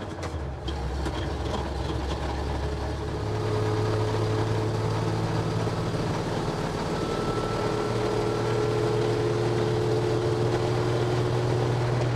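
Dodge M37 military truck's engine accelerating, heard from inside the cab. Its note steps up in pitch about three seconds in and again near eight seconds.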